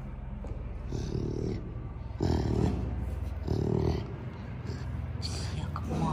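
Tigers with cubs calling: three short, low, throaty calls a little over a second apart.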